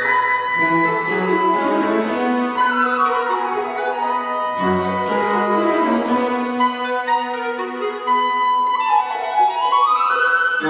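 Chamber orchestra playing classical music: flowing runs that climb and fall in pitch over held notes.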